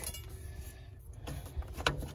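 Light clicks and rattles from a planter's plastic seed meter being handled as the last soybeans are cleaned out of it, with one sharp click near the end. A steady low rumble runs underneath.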